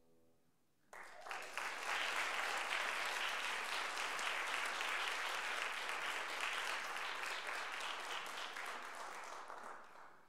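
Audience applauding, breaking out suddenly about a second in and tapering off near the end.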